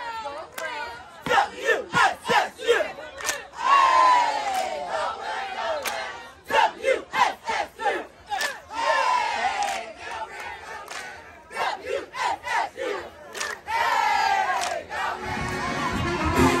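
Cheerleading squad shouting a cheer in unison, the shouted lines broken by sharp rhythmic hits, with a long drawn-out shout that falls in pitch about four, nine and fourteen seconds in. Music starts just before the end.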